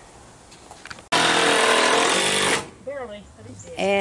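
An electric drill-driver running in one loud burst of about a second and a half, starting and stopping abruptly, as it drives a screw.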